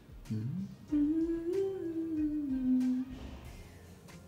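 A person humming: a short rising hum, then one long note for about two seconds that rises slightly and then falls.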